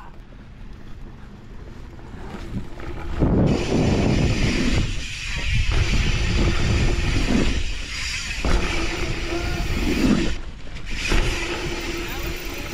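Wind rushing over an action camera's microphone and dirt jump bike tyres rolling on packed dirt, building to a loud rush about three seconds in as the bike speeds down the jump line, with short lulls about five, eight and ten seconds in.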